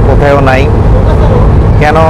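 Steady low rumble of a river passenger launch's engine running, under a man's voice.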